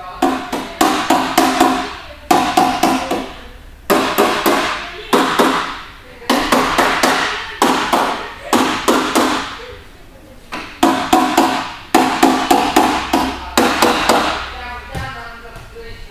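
Rapid hard knocking in about ten runs of five to eight blows each, separated by short pauses, with a ringing tone under each run.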